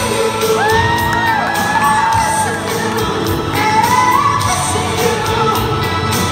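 A singer's amplified voice singing a pop song into a handheld microphone over a recorded backing track with a steady beat, echoing in a large hall.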